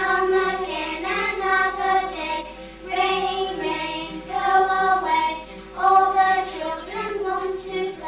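A group of young children singing a song together in short sung phrases with brief breaks between them.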